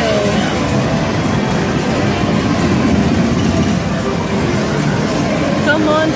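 Steady din of a busy arcade: machine noise mixed with background voices.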